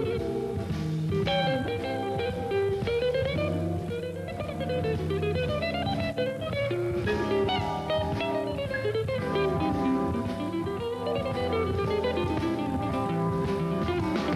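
Live jazz guitar solo on a hollow-body archtop electric guitar: quick single-note runs that climb and fall, over sustained low backing from the band.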